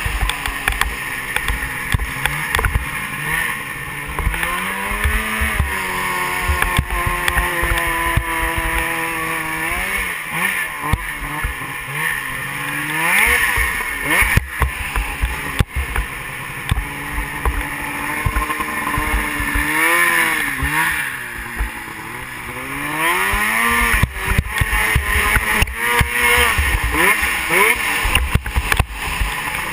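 Snowmobile engine running under the rider, its pitch climbing and falling again and again as the throttle is opened and eased off, with a deep dip and rise again a little past the middle. Wind rumbles on the mounted microphone throughout.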